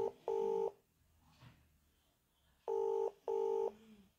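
Telephone ringback tone in a double-ring cadence, heard through a phone's speaker: one pair of short ring bursts at the start and another pair about three seconds in. The call is ringing at the other end and has not yet been answered.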